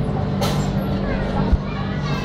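Indistinct voices and children's chatter in a busy indoor play area over a steady low hum, with a click about half a second in and a dull thump about halfway through.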